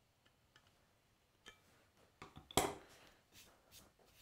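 A few faint clicks and light knocks from a cabinet scraper being handled as its blade is cinched down, the loudest knock about two and a half seconds in.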